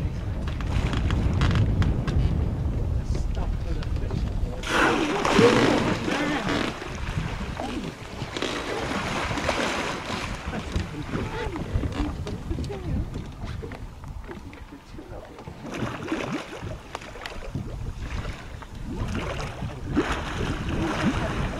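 Wind buffeting the microphone and sea water moving against a small boat's hull, under faint, indistinct voices. Three louder rushes of noise come through, the strongest about five seconds in.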